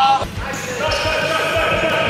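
A rubber ball thudding repeatedly on a wooden gym floor, under shouting voices and music.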